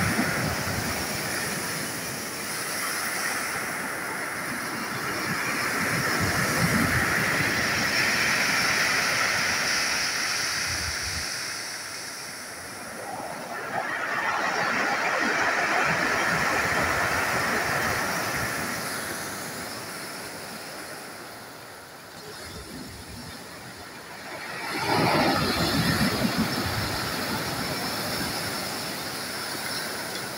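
Sea surf breaking on a pebble beach, rising and falling in slow surges as each wave comes in and washes back. The loudest breaks come a few seconds in, around the middle, and suddenly about five seconds before the end.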